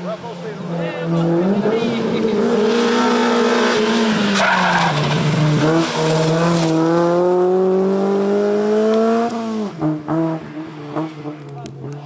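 Honda Civic hatchback race car driven hard through a hairpin, its engine note climbing with the revs and tyres squealing as it slides through the bend. The engine note drops sharply about nine and a half seconds in, then runs lower as the car moves away.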